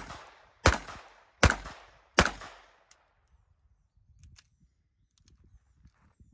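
Three shots from a Ruger LCP II Lite Rack .22 LR pistol, about three-quarters of a second apart, each with a short echo. The shooting then stops, with only a couple of faint clicks: a stoppage the shooter links to light primer strikes with this ammo.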